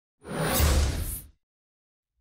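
A single whoosh sound effect with a deep rumble underneath, swelling in and dying away over about a second.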